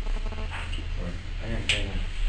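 Faint, indistinct speech in a room over a steady low electrical hum, with a brief sharp click near the end.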